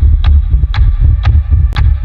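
Trailer sound design: a deep throbbing bass pulse about twice a second, each pulse topped by a sharp tick, like a heartbeat or clock.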